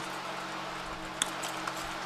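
Pause in speech with a faint steady hiss and low hum, and a single soft click a little past a second in.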